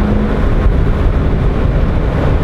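Chevrolet Corvette C6 Z06's 7.0-litre LS7 V8 running on the move, heard from the cabin with the windows down, mixed with road and wind noise. The sound is loud and steady.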